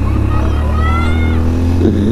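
125 cc motorcycle engine accelerating, its pitch rising steadily over about a second, over a constant low rumble.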